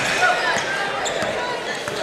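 A basketball being dribbled on a hardwood gym floor over a steady gym crowd murmur.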